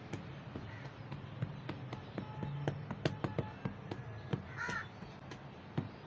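Hands crumbling and rubbing dry gritty sand in a plastic tub, a rustling scrape with many small crackling clicks of grit. A single short animal call, likely a bird, sounds in the background about three-quarters of the way through.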